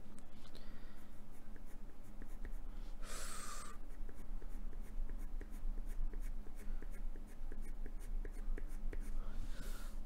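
Black coloured pencil scratching on paper in quick, short strokes, about three a second, laying down fur texture. A brief hiss comes about three seconds in.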